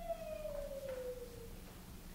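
Unaccompanied soprano voice holding one soft, long note that slides slowly down in pitch and fades out about one and a half seconds in.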